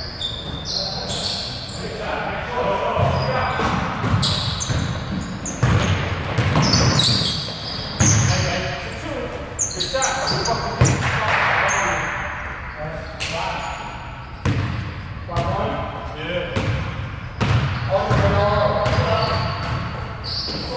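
Basketball bouncing and being dribbled on a hardwood gym floor, with sharp knocks scattered throughout. Players' voices call out over it, echoing in the large hall.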